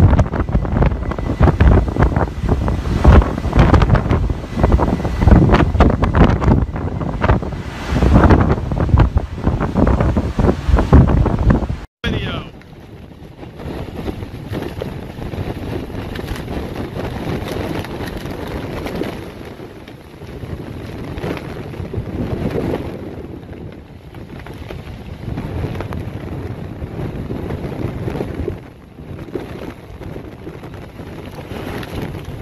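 Storm-force wind buffeting the microphone in loud, gusty blasts, over rough sea. About twelve seconds in the sound cuts to a steadier, quieter rush of wind, rain and churning water.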